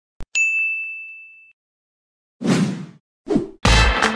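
Subscribe-button animation sound effects: a sharp click, then a bright bell-like ding that rings out and fades over about a second. Near the end come two short whooshing swishes, the second louder.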